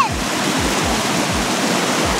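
Shallow, fast river rushing over rocks and around a jam of fallen logs: a steady hiss of rapids.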